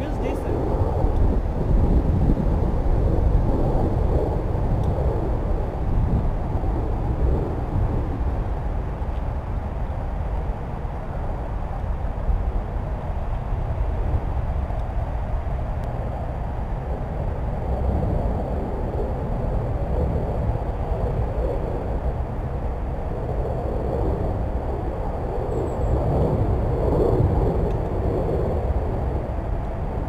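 Wind buffeting the microphone: a steady low rumble that swells and eases.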